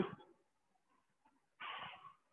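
Mostly quiet, with one short, soft breath out near the end.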